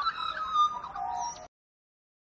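Several birds calling and chirping in short whistled notes, which cut off abruptly about one and a half seconds in, leaving dead silence.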